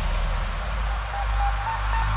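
Quiet breakdown in an uptempo hardcore DJ mix: a deep sustained bass rumble under a wash of noise, with a short repeated synth note coming in after about a second and a half.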